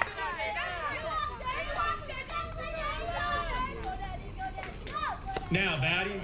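Many children's voices shouting and cheering at once, high-pitched and overlapping, rising and falling in pitch.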